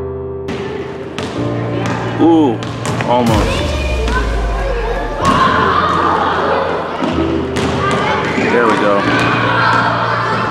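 Basketballs bouncing and thudding on a wooden gym floor at irregular intervals, with children's voices echoing through the large hall.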